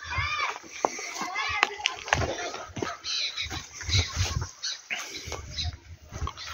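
Indistinct background voices with no clear words, over scattered clicks and repeated low thumps.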